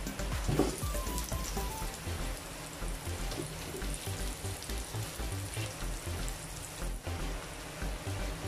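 Sliced garlic sizzling steadily in hot oil in a non-stick pan, with a pat of butter going in partway through. Background music plays underneath.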